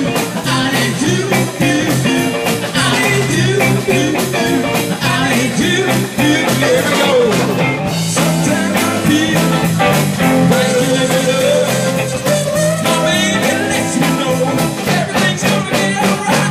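A live rock band plays a blues-rock number with a steady beat on electric guitars, bass and a drum kit, loud throughout.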